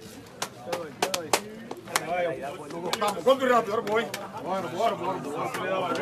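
Men's voices talking and calling out together, growing louder toward the end, with a string of sharp smacks scattered through the first half.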